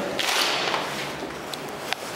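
Fire door being pulled open by its lever handle: a rush of noise as it swings, fading over about a second, then a single sharp click near the end.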